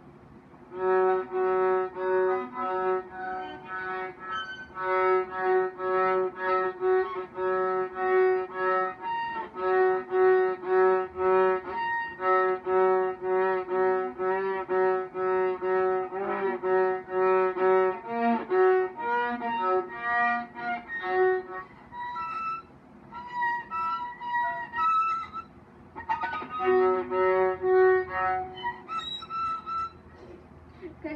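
Viola played with quick, short back-and-forth bow strokes, mostly repeating one note, then moving between a few different notes in the second half with a couple of brief pauses.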